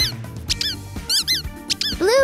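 Background music with a series of short, high-pitched cartoon squeak sound effects, mostly in quick pairs about three times.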